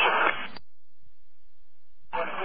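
Police radio: the end of a narrow-band voice transmission cuts off about half a second in with a brief burst of squelch noise, followed by dead air.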